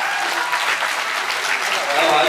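Audience applauding steadily after a live song has ended, with a few voices mixed in.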